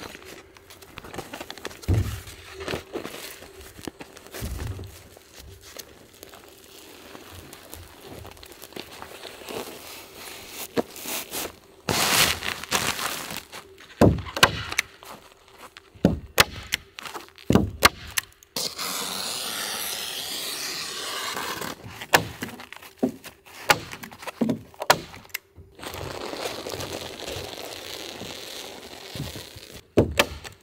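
Hand stapler snapping as it drives staples through a plastic vapour-barrier sheet into the wooden floor frame, a series of sharp, irregular clacks. Between the shots, the plastic sheet crinkles and rustles as it is pulled and smoothed.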